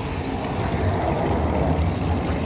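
Steady street noise of passing traffic with a low rumble, mixed with a thin stream of water splashing from a stone fountain's spout into its basin.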